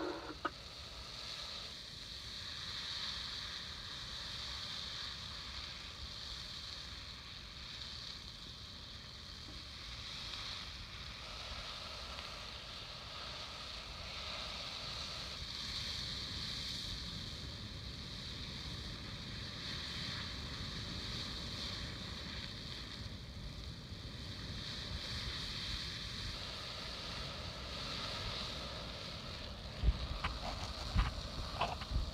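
Wildfire burning through trees: a steady rushing noise with a low rumble underneath.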